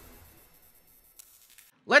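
The fading tail of a title-card sound effect: a low, noisy whoosh that dies away to near quiet, with a faint click about a second in. A man starts speaking right at the end.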